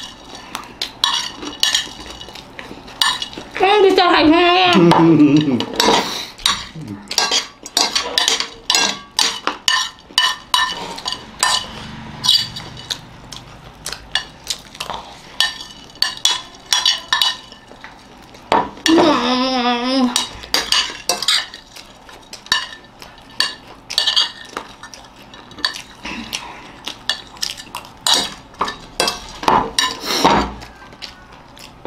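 Metal spoons clicking and scraping against plates in quick, irregular strokes as two people eat fast. Twice, about four seconds in and again near twenty seconds, a person's wavering voice sounds over it for a couple of seconds.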